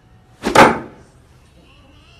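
A thrown dart striking a dartboard: one loud, sudden hit about half a second in that dies away within half a second.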